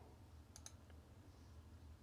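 A couple of faint computer mouse clicks close together, about half a second in, over near silence.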